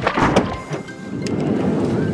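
Ominous horror-film score: held music tones over a low, thunder-like rumble, with a couple of short thuds in the first half second.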